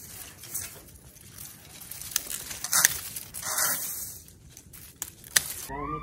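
Dry, dead shrub leaves rustling and crackling as the stems are handled and cut back with hand pruning shears, with a few sharp snips.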